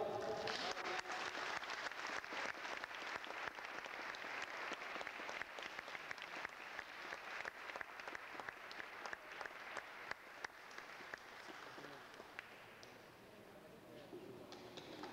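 Congregation applauding, a dense patter of many hands that thins out and dies away over about twelve seconds.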